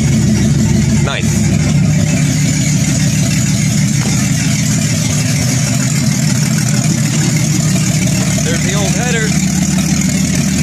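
A 1998 Jeep Cherokee's 4.0 inline-six, with a ported 7120 head and an open Banks Revolver header, idling steadily with a deep, even exhaust note.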